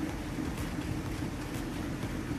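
Steady outdoor background noise: a low rumble with an even hiss above it.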